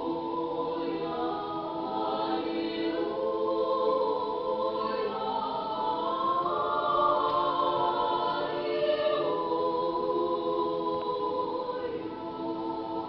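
Small mixed church choir of men's and women's voices singing Russian Orthodox sacred music a cappella, in held chords that swell in the middle and ease off near the end.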